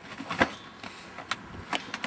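A few sharp clicks and knocks as a gloved hand works a hard plastic DeWalt tool case, the case holding a reciprocating saw; the loudest click comes about half a second in.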